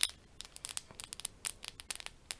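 A metal pen handled close to the microphone: an irregular run of short, sharp clicks and ticks, the first one the loudest.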